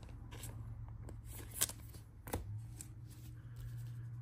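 A trading card being slid into a soft plastic penny sleeve and handled: quiet rustling of card and plastic with a few light ticks.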